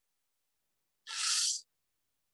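A man's short, breathy intake of air into the microphone about a second in, lasting about half a second; otherwise silence.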